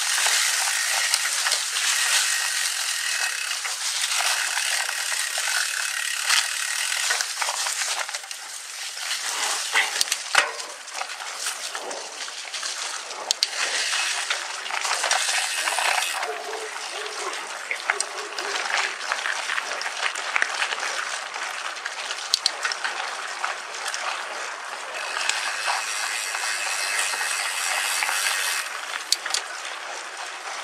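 Mountain bike rolling fast over a dry dirt trail strewn with leaves: a steady rush of tyre noise with frequent small clicks and rattles from the bike, and a few sharper knocks about ten seconds in.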